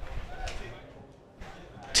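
Faint outdoor ground ambience with a few distant voices.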